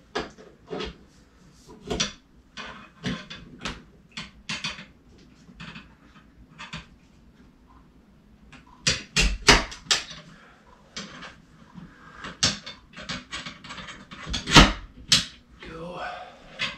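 Clicking and knocking of paramotor cage hoop tubes and spars being handled and pushed together, with a run of louder knocks about nine seconds in and a sharp knock near the end.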